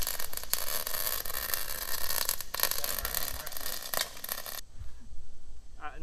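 Wire-feed welder arc crackling steadily while welding steel, then cutting off suddenly about four and a half seconds in. The welder is set so hot that it burns holes through the metal.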